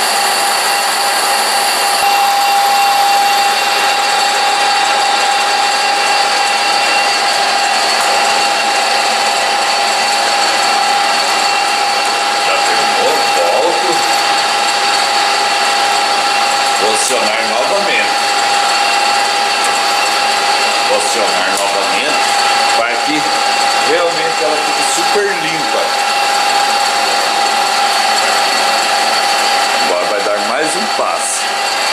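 Nardini engine lathe running steadily with a high steady whine while a boring bar, on automatic power feed, bores out the hole of a metal pulley.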